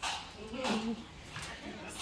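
A toddler's short vocal sounds, loudest about half a second to a second in, among faint background voices.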